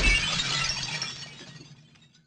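Logo-intro sound effect of a shattering burst, its tail of scattered high tinkles dying away steadily to nothing.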